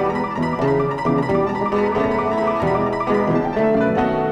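Blues song's instrumental passage between sung lines: a string of plucked guitar notes over the accompaniment.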